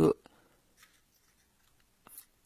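A faint metallic scrape and click from a squeeze-handle ice cream scoop as its lever sweeps a scoop of ice cream out into a paper cupcake liner, heard just after a spoken word ends.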